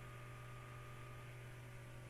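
Faint, steady low electrical hum with room tone: no speech, nothing else happening.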